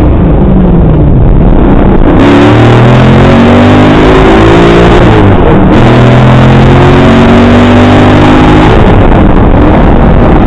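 A kit car's GM-sourced V8, tuned to over 600 horsepower, heard very loud from inside the cabin while accelerating hard. The engine note climbs, drops at an upshift about five seconds in, then climbs again and drops near the end.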